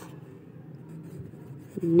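Quiet room with a faint steady low hum and light rustling of a hand and pencil over a paper workbook page.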